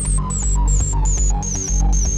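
Analog synthesizers playing a steady, droning bass line. Over it runs a quick sequence of short notes, about four or five a second, whose pitch sinks and then starts to climb back near the end.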